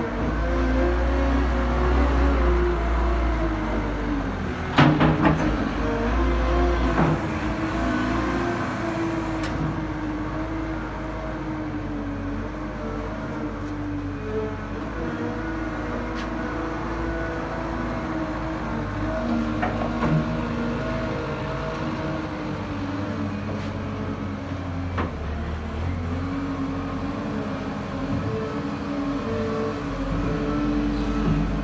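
CAT 907H2 compact wheel loader's diesel engine running steadily while the machine manoeuvres, its pitch drifting slightly with throttle. A few sharp knocks come about five seconds in and again around seven seconds.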